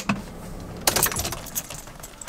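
A bunch of keys on a ring jangling as a key is brought to a van's ignition, with a cluster of light metallic clinks about a second in.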